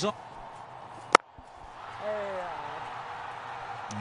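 A single sharp crack of a cricket bat striking the ball about a second in, followed by low crowd noise from the ground.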